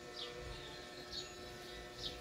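Faint short bird chirps, a few spaced through the moment, over a low steady hum.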